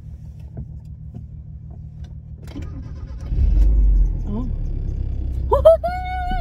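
1996 Mazda MX-5 Miata (NA) inline-four engine running heard from inside the cabin, a low steady rumble that swells about three seconds in as the car pulls away under load.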